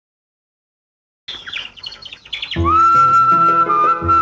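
A karaoke backing track starting: silence, then bird chirps about a second in, then at about two and a half seconds a held flute melody comes in over bass and chords.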